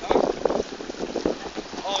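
Wind buffeting the microphone over shallow floodwater flowing across the road, with voices talking.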